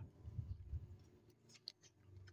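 Faint handling of tarot cards: a soft rustle as a card is drawn from the deck spread on a cloth, then a few small clicks as it is fanned in with the cards in the hand.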